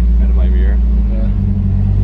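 Drift car's engine running at low revs while warming up, heard from inside the cabin as a steady low drone; its note shifts slightly about a second in.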